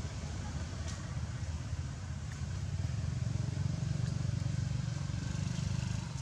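A motor engine running steadily with a low hum, a little louder from about halfway through, with a few faint ticks.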